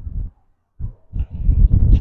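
Wind buffeting and handling noise on the microphone: a few short low thumps, then a steadier low rumble that builds in the second half.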